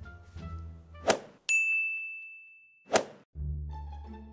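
Comedy sound-effect sting over plucked-bass background music: a short sharp hit about a second in, then a bright single-pitched bell ding that rings and fades for over a second, ended by a second sharp hit, before the music comes back near the end.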